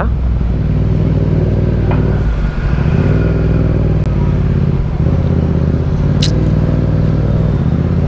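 Yamaha MT-07's 689 cc parallel-twin engine running steadily at low city speed, heard from the rider's camera, its note dipping briefly a few seconds in as the bike slows in traffic.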